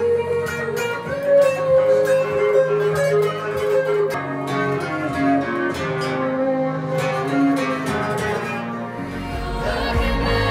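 Fender electric guitar played solo, picking a melodic line of single notes and chord tones. A deep low part comes in about nine seconds in.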